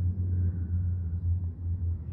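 Steady low droning rumble of aircraft engines overhead, wavering slightly in strength.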